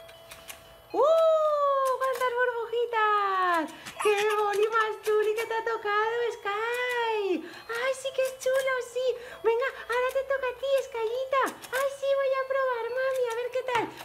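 A high-pitched voice making long, wordless sliding sounds. A falling cry comes about a second in, then a near-continuous run of notes that rise and fall.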